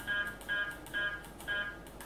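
Uniden R7 radar detector beeping as its menu is stepped through, one short high electronic beep per button press, four beeps about half a second apart.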